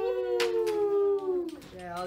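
A young man's long, high "woo" cheer, held and sliding slowly down in pitch until it stops about a second and a half in. A shorter wavering vocal sound follows near the end.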